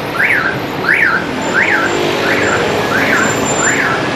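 An electronic vehicle alarm sounding a repeated rising-and-falling chirp, about six in four seconds, over steady street traffic noise.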